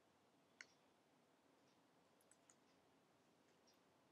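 Near silence, broken by a few faint clicks from working a computer: one sharper click about half a second in and two softer ones around two seconds in.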